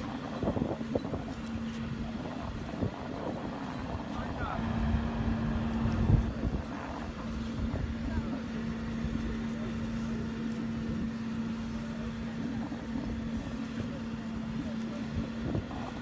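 Boat travel lift's engine running with a steady hum as its winches raise the lifting straps under a yacht's hull; the hum drops out for a couple of seconds early on, then returns.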